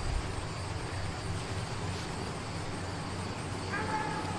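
Steady low rumble of distant road traffic. A faint high tone comes in near the end.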